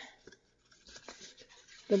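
Faint rustling and light ticks of a sheet of designer paper being handled and pressed flat by hand.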